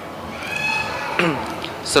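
A brief, faint, high-pitched voice-like call that slides down in pitch about halfway through.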